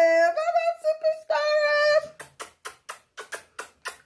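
A woman singing a short sign-off jingle, a held note and then a brief sung phrase, followed by a string of about eight quick, sharp smacks, roughly four a second.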